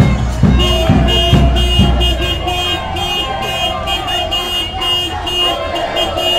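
A car alarm beeping in a fast, even pattern, about three beeps a second. Deep thumps go on under it for the first two seconds or so, then stop.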